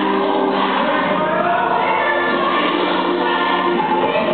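Recorded gospel choir song playing: a choir singing long held notes over the band.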